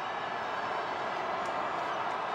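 Stadium crowd noise: a steady, even din of many voices with no single voice standing out.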